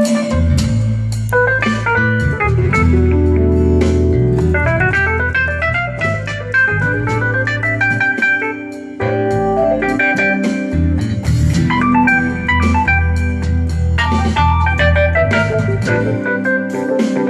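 Live band playing an instrumental break: a keyboard solo in an organ sound, with quick climbing runs of notes over bass and guitars.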